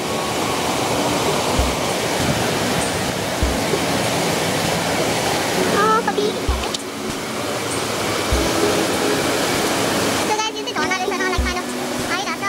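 Loud, steady rush of the Partnach river torrent churning through its narrow rock gorge, with background music carrying a low beat and brief voice-like notes.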